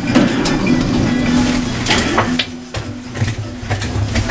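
Hotel elevator doors sliding open at a floor, a mechanical rumble and hum with a few sharp clicks and knocks around the middle.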